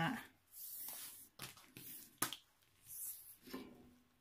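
Hands handling a diamond painting canvas under its clear plastic cover and a tape measure: soft rustling with a couple of sharp clicks.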